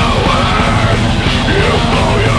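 Black metal song with harsh shouted vocals over distorted guitars and drums, loud and unbroken.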